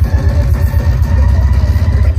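Loud electronic bass music from a DJ set, played over a large venue sound system and recorded on a phone in the crowd. It has a dense low bass line broken into fast pulses.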